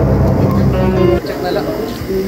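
Background music with a steady bass line, with people talking indistinctly over it.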